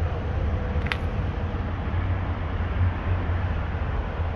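Steady low rumble with hiss, and one sharp click about a second in.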